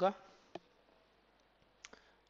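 A voice finishes a word, then a quiet pause holds two short, sharp clicks: one about half a second in and a louder one near the end.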